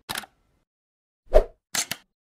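Animated logo intro sound effects: a short click at the start, a louder single hit about a second and a half in, then two quick clicks near the end, with silence between them.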